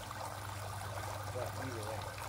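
Koi pond water trickling steadily, over a low steady hum.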